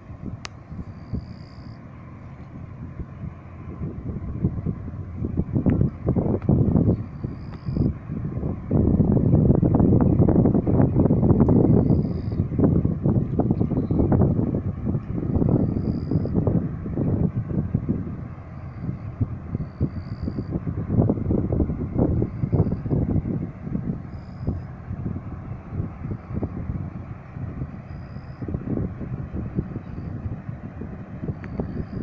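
Wind buffeting the microphone in irregular gusts, loudest about ten seconds in. A faint, high, broken chirring runs above it.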